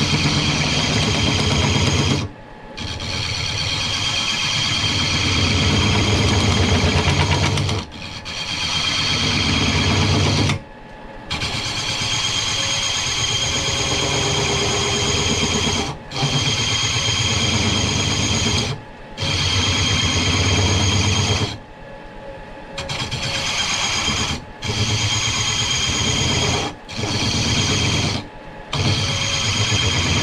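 Hand-held metal-cutting bit turning down a cast iron tool-rest post on a woodturning lathe: a loud grinding cut with a high ringing tone and a fast low chatter from the out-of-round interrupted cut. The cut drops out briefly about every two to three seconds as the tool comes off the work.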